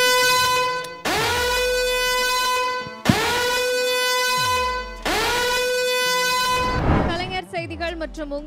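Contest time-up buzzer, an air-horn-like tone, sounding in long blasts of about two seconds each, back to back, each swooping up in pitch as it starts: the cooking time has run out. Voices take over near the end.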